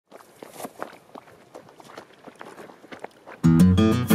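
Faint footsteps crunching on a stony gravel path, about two or three steps a second. About three and a half seconds in, loud acoustic guitar music starts suddenly.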